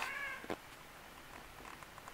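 Domestic cat giving one short, slightly falling meow, followed by a single soft click.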